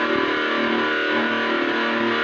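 Flying V electric guitar played through an amp, held notes ringing out steadily.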